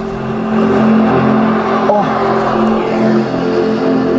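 iFFALCON 55-inch TV's built-in stereo speakers playing a nature demo soundtrack: ambient music of sustained low chords over a steady hiss, getting louder over the first second as the volume is turned up. The reviewer judges it clean, not distorted, at high volume.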